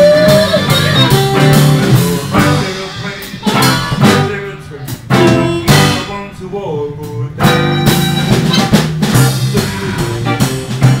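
Live blues band playing an instrumental passage: a harmonica plays a lead with bent notes, sliding up right at the start, over electric guitar and a drum kit.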